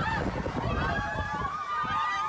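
Several riders on a swinging ship ride screaming at once, long high-pitched screams overlapping each other, over a steady low rumble.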